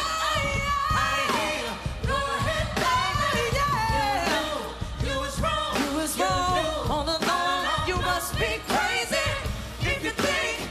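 A woman singing lead into a microphone over a live band with drums, her voice sliding up and down in long runs. It is live pop-R&B.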